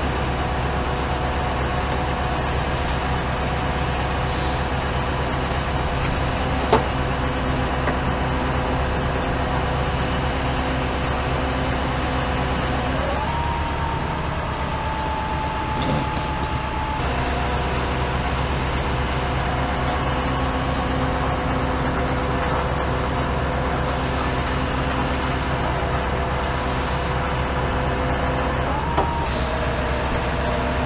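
Flatbed tow truck's engine running steadily with a whine from its winch as a crashed SUV is pulled up the tilted bed. About halfway through, the whine steps up in pitch for a few seconds, then drops back, and a sharp click comes about a quarter of the way in.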